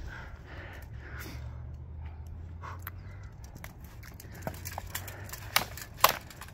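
A low steady rumble, then near the end two sharp clacks about half a second apart as two steel longswords strike each other.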